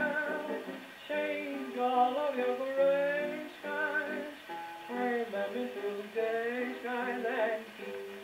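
A 1920s Brunswick 78 rpm popular-song record playing on a portable wind-up gramophone: continuous melody with a thin sound that has no deep bass and little above the mid treble.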